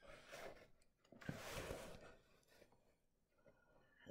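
Near silence: room tone, with two faint soft rustles in the first two seconds.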